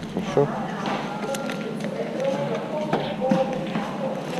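Indistinct voices at a shop checkout, with a few light clicks from bagged coins and plastic being handled.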